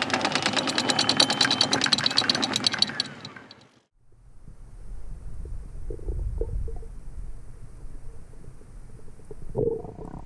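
Anchor chain running out over the bow, a fast even rattle of links that dies away about four seconds in. Then a muffled underwater rumble with a few dull knocks.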